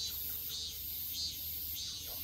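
An insect chirping in an even rhythm of high-pitched pulses, about two a second, over a low steady outdoor background.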